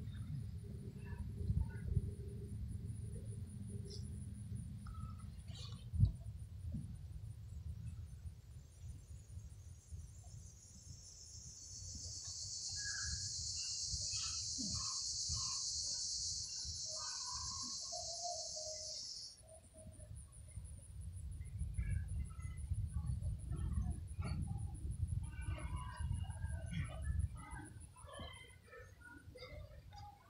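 Outdoor ambience of birds calling, over a low rumble. A high, steady buzz runs for about eight seconds in the middle and cuts off suddenly.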